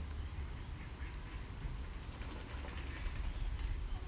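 Wind rumbling on the microphone outdoors, with faint bird calls in the background and a fast run of faint high ticks in the second half.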